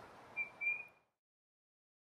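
Two short, faint, high whistle-like notes at one steady pitch, the second slightly longer, just under a second in.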